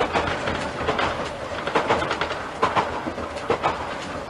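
Kanbara Railway Moha 41 electric railcar running, heard from the front of the car. The wheels strike the rail joints in double clicks a little under once a second, over a steady rumble.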